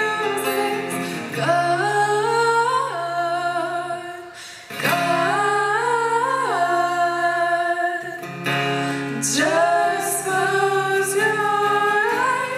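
Two female voices singing a ballad in harmony into microphones, over acoustic guitar. The singing breaks off briefly about four seconds in, then resumes.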